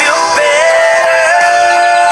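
A young girl singing a pop-country song: she slides into a high note about half a second in and holds it for over a second.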